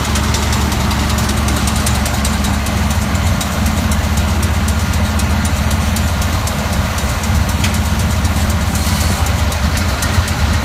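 Case IH 8930 tractor's diesel engine running steadily while working a Krone Comprima round baler in hay, with a dense, fast clicking rattle from the machinery over the engine hum.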